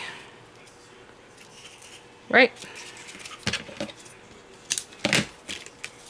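A few short, sharp clicks and taps from hands working paper craft materials, pressing foam adhesive and a cardstock panel down on the card, the sharpest about five seconds in.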